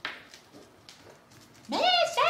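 A short sharp sound at the very start, then near the end a loud, high-pitched, drawn-out vocal call that slides up in pitch and holds steady.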